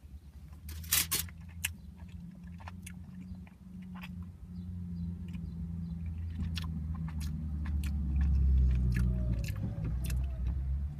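A square of thin Lindt Excellence milk chocolate bitten off with a sharp snap about a second in, then chewed close to the microphone, with scattered small mouth clicks and a low rumble that grows louder toward the end.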